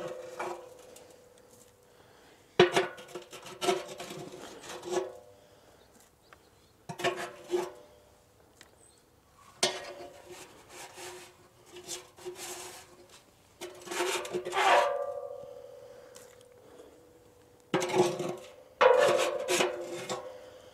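Metal scoop scraping clumped ash and oil-dry absorbent off the steel floor of a Breeo fire pit, in about five bouts of strokes with short pauses between. Under each bout the steel pit rings faintly.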